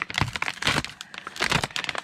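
Clear plastic vacuum-sealed bag crinkling and tearing as it is slit open with a hobby knife, in a dense run of quick, irregular crackles.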